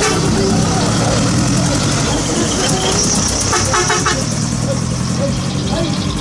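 A Japanese art truck's engine running as it pulls away, with a short horn toot a little past halfway, over people talking.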